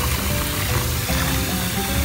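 Background music with held notes, over the sloshing of bath water as a hand swishes through the foam.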